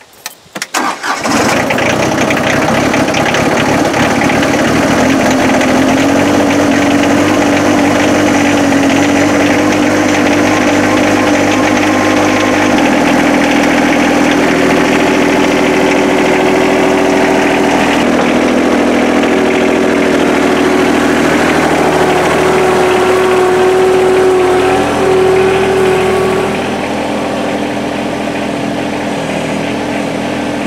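Yanmar SA324 compact tractor's three-cylinder diesel engine being cranked and catching about a second in, then running steadily. Its note shifts about 13 seconds in, and it drops a little in level near the end.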